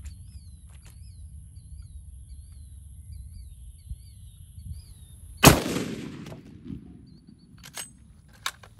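A single rifle shot from a 300 Weatherby Magnum, about five and a half seconds in, its report dying away over about a second.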